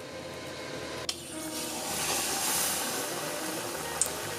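A beer-battered, nori-wrapped piece of seafood mushroom deep-frying in hot oil: a steady bubbling sizzle that swells about a second in and stays strong.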